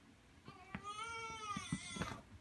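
One long drawn-out cry, lasting about a second, that rises and then falls in pitch, from a cat or a baby, with a few small knocks around it.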